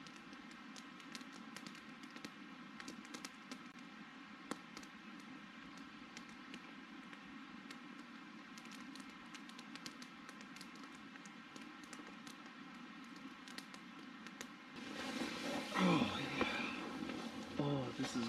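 Small wood campfire crackling, with many scattered sharp pops and snaps over a steady low hiss. About three seconds before the end this gives way to louder rustling and a low voice.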